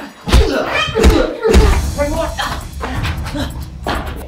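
Wordless voices mixed with several sharp hits in the first second and a half.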